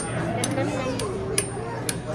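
Background chatter of a busy restaurant dining room, with sharp metallic clinks of cutlery and dishes, four in two seconds, the loudest near the middle.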